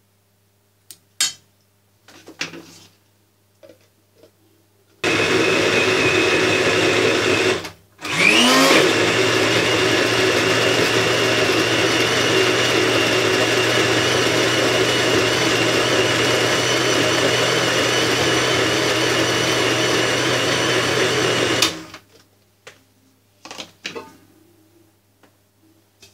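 Electric countertop blender grinding a load of cooked meat and vegetables into pâté: it runs for about two and a half seconds, stops briefly, then starts again with a rising whine as the motor spins up and runs steadily for about thirteen seconds before cutting off. A few clinks of a ladle against the jar come before it, and a few knocks after.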